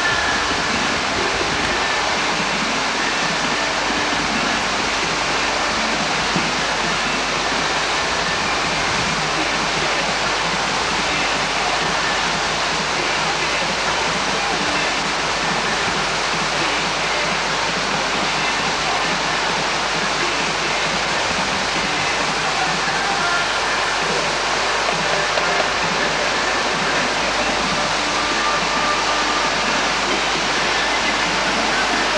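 Whitewater rapids of a slalom course rushing steadily, an even, unbroken noise of churning water.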